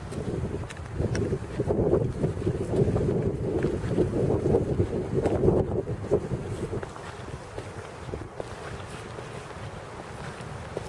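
Wind buffeting the microphone in a low, rough rumble. It swells about a second in and eases off a little after the middle.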